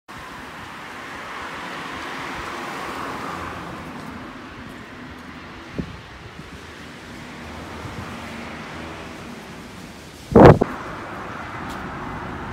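Wind blowing on the microphone over faint street traffic, a steady rushing that swells slightly in the first few seconds. A loud, sudden thump about ten seconds in.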